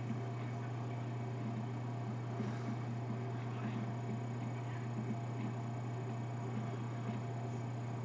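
Steady low hum with a faint hiss underneath: background room tone, with no distinct sound event.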